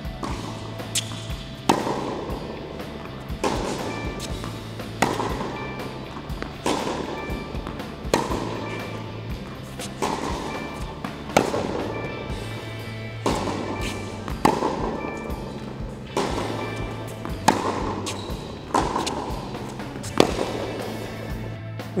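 Background music over a tennis rally: sharp racquet strikes on the ball about every one and a half seconds, at slightly uneven spacing.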